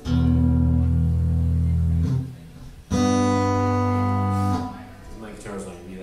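A man singing to a strummed acoustic guitar. There are two long, loud held phrases of about two seconds each, the second starting about three seconds in, followed by quieter playing.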